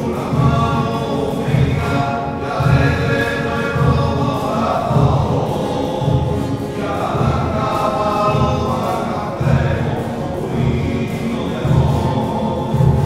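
A small group of men singing a Mass entrance hymn in chorus to strummed acoustic guitar, over a steady low beat about every three quarters of a second.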